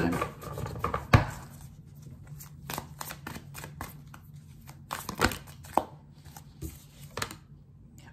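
Tarot cards being shuffled by hand: a run of quick, irregular card snaps and clicks, with one sharper snap about a second in, stopping shortly before the end.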